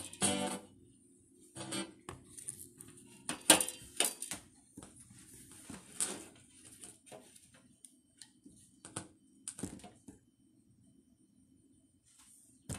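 Music that stops about half a second in, followed by scattered short plucked or knocking sounds over a faint steady low hum.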